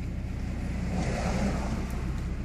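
Steady low rumble inside a moving car's cabin.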